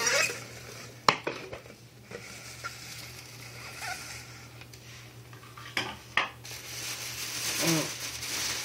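A few sharp clicks and clinks of hard objects being handled, one about a second in and two close together near six seconds, with softer ticks between. They come from the enclosure and the feeding tool being handled, over a steady low hum.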